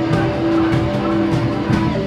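Live rock band playing: one long held note rings over drums and cymbals, stepping to a higher pitch near the end.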